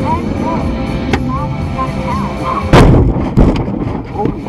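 Low-speed head-on car collision: a loud bang of impact a little under three seconds in, then a second, shorter knock half a second later, over steady road and engine rumble.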